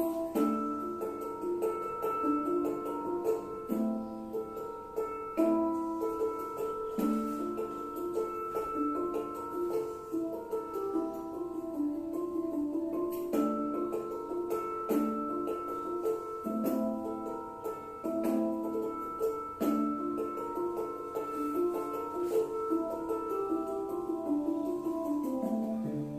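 Instrumental background music: a repeating melody of short pitched notes with a light, even pulse.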